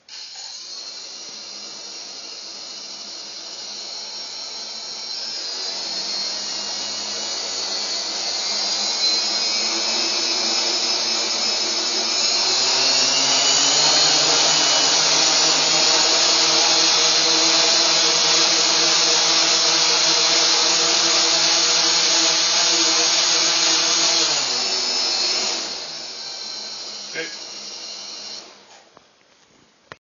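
Four HobbiesRuz 2217-9 950kV brushless motors of an AeroQuad quadcopter spinning 10x4.7 propellers: the whine starts suddenly, rises in pitch and loudness as the throttle is raised, holds steady, then drops and stops near the end. The quad never lifts off, which the builder suspects is a weight or power problem.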